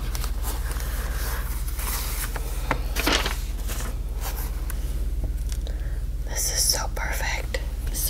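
Thin white tissue-paper wrapping rustling and crinkling in the hands as a leather notebook is unwrapped and set down, over a steady low hum.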